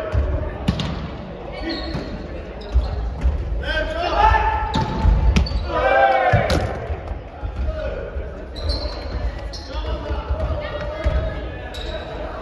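A volleyball being struck and bouncing on a wooden gym floor: a string of sharp smacks about every second, with players' shouts between them.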